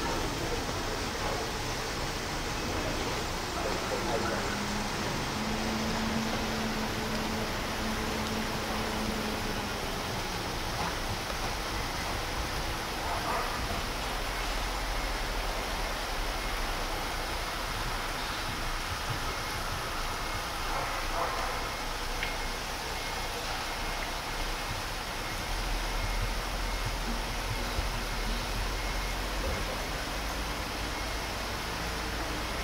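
Steady hiss of background noise, with a few faint, indistinct sounds now and then and no clear hoofbeats.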